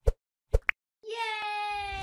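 Logo-intro sound effects: two short plops about half a second apart with a small blip after the second, then a held tone that sinks slightly in pitch, joined near the end by a low boom.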